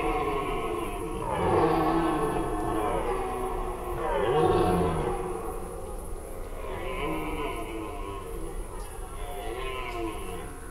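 Red deer stags roaring during the rut, several calls overlapping: the stags' chase roar (Sprengruf). Two loud roars come about one and a half and four and a half seconds in, with fainter roars from other stags after them.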